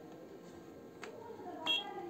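A single sharp click about halfway through, then one short high-pitched electronic beep near the end.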